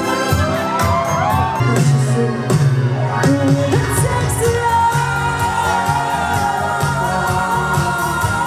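Live pop music from a stage: female vocalists singing into microphones together over keyboard and a backing band, loud and continuous.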